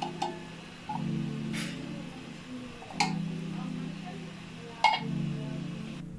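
A few sharp clinks against a large aluminium cooking pot, one right at the start, one about three seconds in and one just before five seconds, over a low hum that comes and goes.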